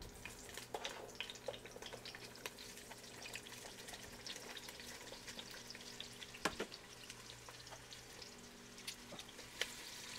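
Onion wedges sizzling in hot oil in the Instant Precision Dutch Oven's pot on its sear setting, with a steady patter of small crackles. A single sharp click about six and a half seconds in.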